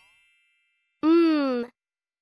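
A chime's ringing tone fading over the first second, then a voice sounding the letter m as a held 'mmm' hum, falling slightly in pitch, about a second in.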